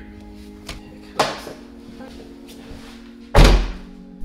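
A car door, the Corvette's passenger door, shut with a heavy thud about three and a half seconds in, after a sharper click about a second in, over background music.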